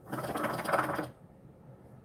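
Shisha water bowl bubbling as a draw is pulled through the hose, a rapid gurgling rattle lasting about a second.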